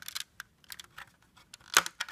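Scattered light clicks and knocks of close handling, plastic Lego pieces and the handheld camera being touched, with one sharper knock near the end.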